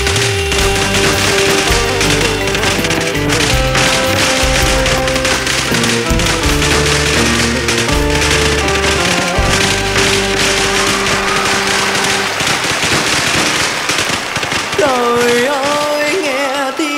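Band playing an instrumental interlude of a slow Vietnamese bolero ballad: a drum kit keeps a steady beat under a bass line and held keyboard melody notes. A wavering melodic line comes in near the end.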